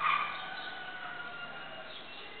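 An animal call: a sudden loud cry at the start that trails into a thin, held tone lasting nearly two seconds.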